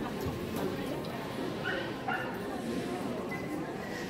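A dog giving two short, high-pitched yips about half a second apart, near the middle.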